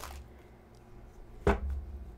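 Tarot card laid down onto a tabletop: a soft tap at the start, then a sharp knock with a low thud about a second and a half in.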